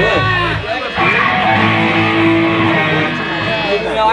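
Electric guitar strumming a chord through an amplifier, left ringing for a couple of seconds, with a low bass note under it.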